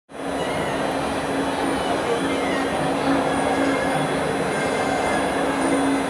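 Traditional Muay Thai ring music (sarama) for the wai kru: a reedy pi java oboe holds one steady note with short breaks, over a dense, even background of arena noise.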